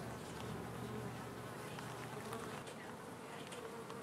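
A small cluster of honeybees buzzing faintly, a steady low hum.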